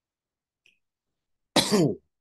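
A man coughs once, sharply, near the end, after about a second and a half of quiet.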